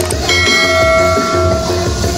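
A single bell-like ding from a subscribe-button notification-bell sound effect, struck once about a third of a second in and ringing for over a second, just after a faint mouse-click. It sits over electronic dance music with a steady beat.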